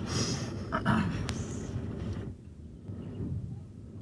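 A car's engine and tyres rumbling at low speed over a rutted, muddy dirt track, heard from inside the car; the track is rough enough that the driver wants a 4x4. A hiss over the rumble for the first couple of seconds, then quieter.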